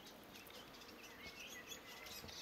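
Near silence, with a few faint, short bird chirps in the background.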